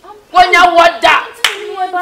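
Loud, animated speech with several sharp hand claps among the words in the first second and a half.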